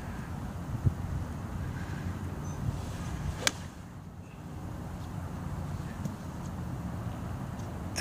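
A golf club swung and striking a ball off grass turf: one sharp crack about three and a half seconds in, over a steady low background rumble.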